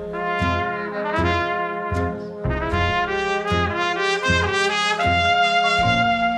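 Jazz trumpet solo, with several notes sliding into one another and a long held note near the end, over a small jazz band with upright bass keeping a steady beat.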